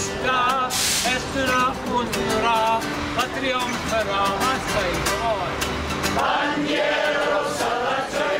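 Steel-string Takamine acoustic guitar strummed in a steady rhythm while men's voices sing a song together.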